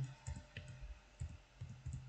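Faint, irregular clicks of computer keys pressed one at a time while numbers are entered into a matrix.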